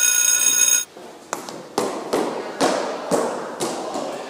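A loud electronic bell or alarm tone ringing steadily, cutting off abruptly about a second in. Then footsteps going down a stairwell, about two steps a second, each step echoing and fading toward the end.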